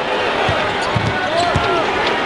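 A basketball dribbled on a hardwood court, a few low bounces about half a second apart, over steady arena crowd noise.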